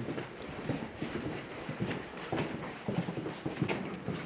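Footsteps of several people on a hard corridor floor, an irregular patter of short knocks with clothing rustle.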